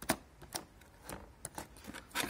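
Used timing-belt tensioner pulley from a 2.0 TDCi/HDi diesel being spun and handled by hand on a bench, giving a few irregular light clicks and knocks. The pulley bearing is being checked for wear: it hums slightly but has no play yet.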